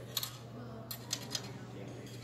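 Light metallic clicks and scrapes of a steel trainer skewer being slid through a bicycle's rear hub axle: four short clicks spread through the two seconds.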